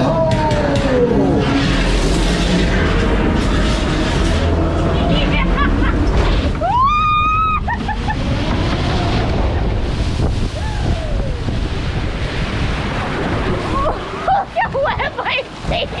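Log flume ride: a steady rush of water and boat noise along the flume, with one high scream from a rider, rising then held for about a second, as the log boat tips over the drop. Laughter and excited voices near the end.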